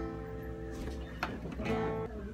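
Acoustic guitar chord strummed and left ringing, struck again a little over a second in and once more near the end.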